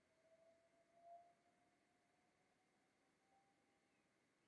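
Near silence: room tone with a faint, thin whistle-like tone that rises slowly in pitch, briefly louder about a second in.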